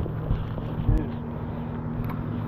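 Bass boat's motor humming steadily, with a sharp knock on the deck about a second in.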